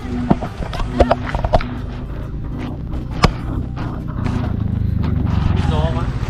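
A motor scooter's engine approaching, a low pulsing hum that grows steadily louder over the last two seconds. Earlier there are a few sharp clicks.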